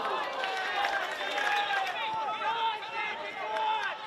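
Several voices shouting at once at a football match, from players and spectators around the pitch, with a few short knocks among them. The shouting drops away near the end.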